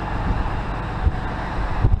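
Wind blowing across the microphone, a steady rushing noise over a low, even rumble, with a couple of soft low thumps.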